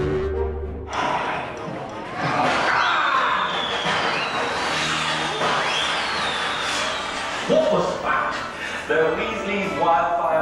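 Music that stops about a second in, then a busy mix of voices and background bustle, with voices clearer near the end.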